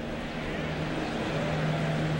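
Steady ballpark crowd noise from a television game broadcast, with a constant low hum running under it.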